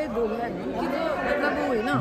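Only speech: people chatting over one another, with no other sound standing out.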